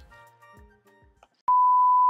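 Faint music fading out, then about one and a half seconds in a loud, steady single-pitch beep starts: the television colour-bar test tone.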